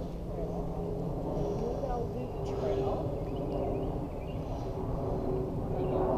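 Outdoor woodland ambience: a steady low drone throughout, with faint high chirps now and then.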